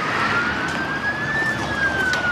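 Emergency vehicle siren wailing: a single tone climbs slowly, peaks about one and a half seconds in and begins to fall, over steady background noise.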